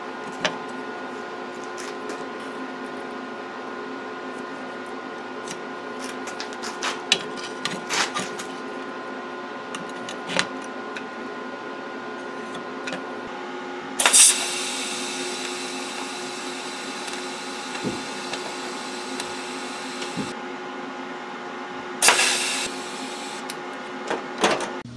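Small metal tools and steel stock clicking and tapping on a workbench as a steel rule and combination square are handled, over a steady machine hum. About halfway through, a loud rushing noise starts suddenly and fades over several seconds, and a shorter one comes a few seconds before the end.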